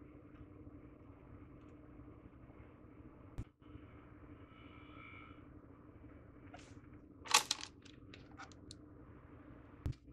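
Hands working PVC pipe fittings and solvent-cement cans while gluing a PVC wye: a short knock, then a quick cluster of clicks and scrapes about seven seconds in, and another knock near the end, over a faint steady hum.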